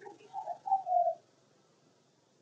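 A few short cooing calls in quick succession over about a second, then they stop.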